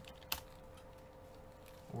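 Faint computer-keyboard typing, with one sharper click about a third of a second in, over a steady faint hum.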